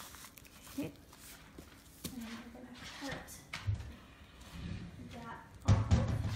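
Plastic piping bag and cling wrap rustling and crinkling as they are handled, with brief mumbled speech, and a low thump near the end as the bag is set down on the counter.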